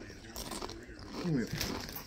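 Someone crunching and chewing a Doritos tortilla chip, with a few faint crisp crackles and a brief murmur from a voice partway through.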